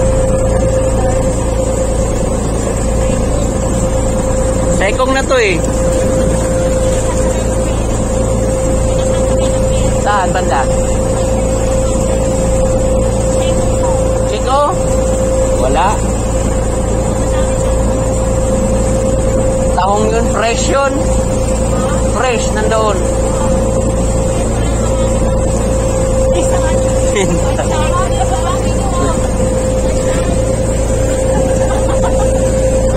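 Small passenger boat's engine running steadily under way: a constant drone with a steady high hum.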